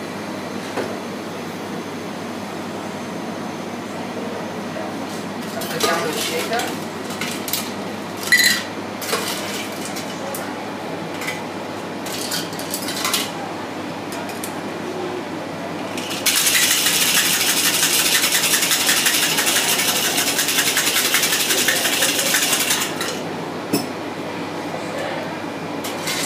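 Ice rattling hard inside a stainless steel cocktail shaker, shaken for about six seconds to chill the drink. Before that come scattered clinks of metal and glass.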